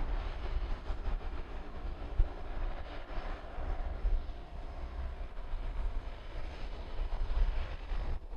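de Havilland Canada DHC-6 Twin Otter's twin Pratt & Whitney PT6A turboprops running as it taxis slowly, with a steady propeller and turbine sound that swells a little about three seconds in. Wind gusts rumble on the microphone underneath.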